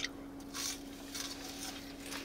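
Faint mouth sounds of someone chewing a french fry: soft, irregular and quiet.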